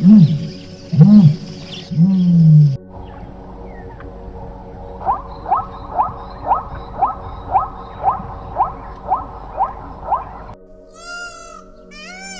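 Ostrich giving three loud, low calls, about a second apart. After a cut, a plains zebra barks in a steady run of short calls, about two a second. Near the end come the higher, drawn-out calls of peafowl.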